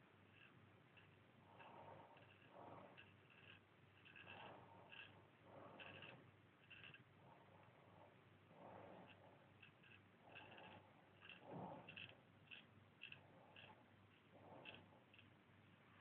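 Faint scraping of a Marshall Wells Zenith Prince straight razor cutting through lathered stubble in many short, quick strokes.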